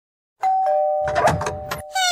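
Two-tone doorbell chime, a higher note followed by a lower one that rings on, with a brief clatter of noise beneath it about a second in.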